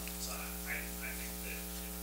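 Steady electrical mains hum in the sound system, with a faint, distant voice under it, too far from the microphone to be made out.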